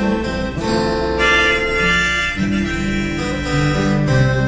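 Harmonica played from a neck rack, with two acoustic guitars accompanying: an instrumental passage of held harmonica notes that change every second or so.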